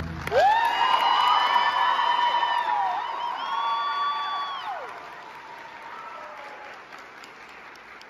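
Audience applauding and cheering, with two long, high-pitched whoops in the first five seconds; the applause fades away over the last few seconds.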